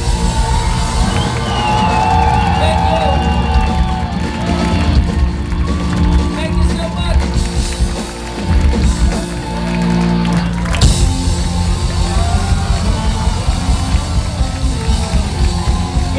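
Live rock band with guitar, bass and drums playing loud through a club PA, with sustained chords; a sharp crash about eleven seconds in.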